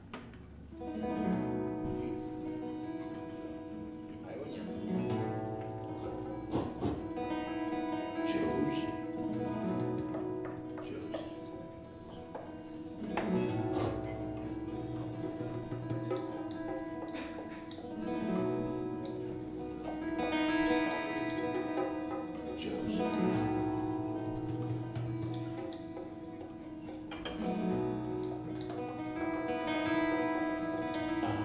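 A small live band playing, starting about a second in: acoustic guitar over a held keyboard chord, with a low note returning every couple of seconds.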